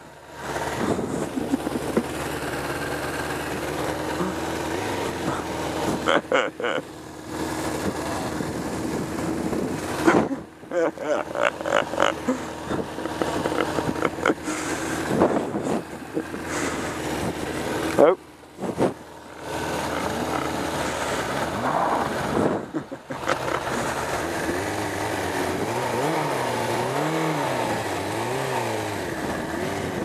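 A 1987 Suzuki GSX-R750's oil-cooled inline-four engine running at low speed on a gravel track, with brief laughter about twelve seconds in. Near the end the engine's pitch rises and falls about once a second.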